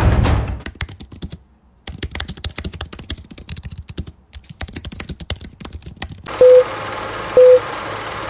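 Typing on a computer keyboard: a fast run of key clicks with a brief pause about a second and a half in. Near the end a film-countdown sound effect takes over, a steady hiss with two short beeps about a second apart.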